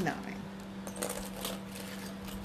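Light clicks and small metallic rattles of costume-jewelry earrings and their display cards being handled, over a steady low hum.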